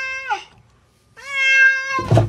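A cat meowing twice. A short meow falls in pitch as it ends, and after a brief pause a longer, steady meow rises at its start and is held.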